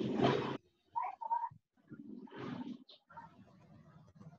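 A child's voice coming through a video call, loud for the first half-second and then in short broken-up snatches, distorted by the call's audio compression.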